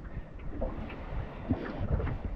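Wind buffeting the microphone in a small open aluminium dinghy, a low uneven rumble, with a faint knock about one and a half seconds in.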